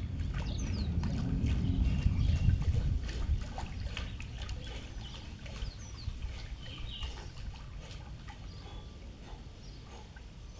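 Swimming-pool water sloshing and splashing around a person moving his arms through it, over a low rumble that is strongest in the first three seconds and then eases off. Birds chirp in short high calls throughout.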